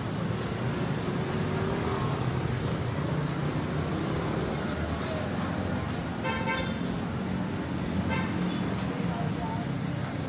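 Street traffic: a steady low rumble of vehicle engines, with a vehicle horn sounding about six seconds in and a shorter toot about two seconds later.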